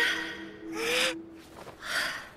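Breathy human gasps: a longer one about a second in and a shorter one near the end, over a faint steady low hum.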